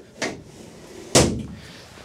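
Two clunks of a tubular metal passenger seat frame being pushed into its floor fittings, about a second apart, the second one louder.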